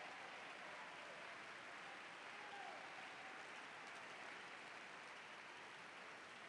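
Faint, steady applause from a large audience in a big hall.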